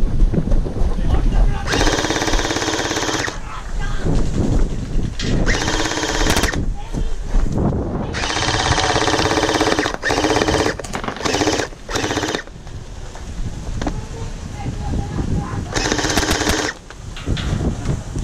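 Electric gel blasters firing in full-auto bursts: about six bursts of rapid shots, each lasting half a second to two seconds, with low wind rumble on the microphone between them.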